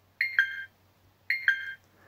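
A Flysky radio transmitter sounds its electronic alert chime twice, about a second apart. Each chime is a short high note that steps down to a lower one. It signals that the gyro calibration of the INR4 GYB receiver has run through.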